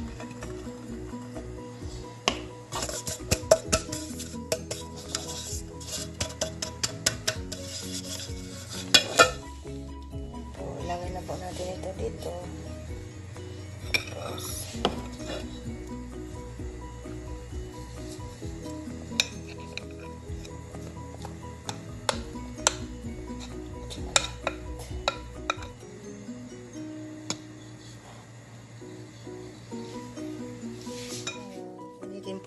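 Metal spoon tapping and scraping against a metal baking pan, with many quick clicks that are thickest in the first ten seconds and sparser afterwards, along with rubbing, as the greased pan is coated so the cake won't stick. Background music plays throughout.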